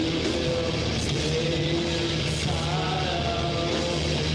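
Live rock band playing, with heavily distorted electric guitars holding long notes over a steady low drone.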